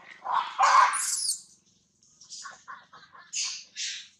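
Baby long-tailed macaque crying: a loud squealing cry of about a second, then a quick run of short chirps and two sharp high squeaks near the end.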